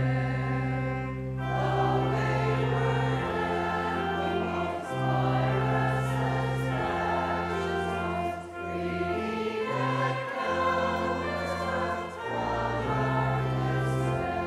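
A choir and congregation singing a hymn in a church, with an organ holding long, steady bass notes beneath the voices and changing chord every couple of seconds.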